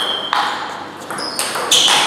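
Table tennis rally, one bat fitted with SPINLORD Irbis II max rubber. The ball knocks sharply off the bats and the table several times, some strikes with a short high ping.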